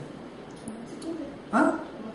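A pause with a faint brief voice, then one short, abrupt spoken word, 'ma?' (Hebrew for 'what?'), near the end.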